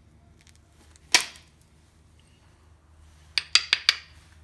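Obsidian being worked with knapping tools: one sharp click about a second in, then four quick glassy clicks close together near the end, with a short high ring.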